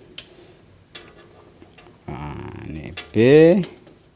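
Small sharp clicks, twice in the first second, as an RCA cable plug is handled and pushed into a power amplifier's rear input jack, followed by about a second of cable-handling rustle.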